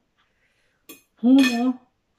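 A single light clink of a metal fork or spoon against a plate about a second in, during a meal.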